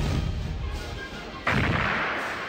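A comic stage explosion. It starts with a deep boom that dies away, and a second blast comes about a second and a half in, also fading out.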